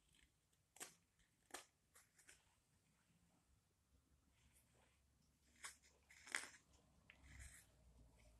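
Carving knife slicing shavings from a small wooden ladle: a handful of short, crisp cuts, with the loudest about six seconds in and a softer scrape near the end.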